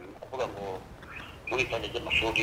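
Faint, thin and nasal speech coming from a smartphone's loudspeaker held up to a microphone: a short murmur about half a second in, then clearer talk from about a second and a half in.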